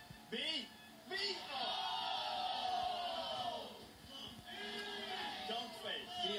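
Several voices shouting and cheering excitedly at once, heard through a television speaker.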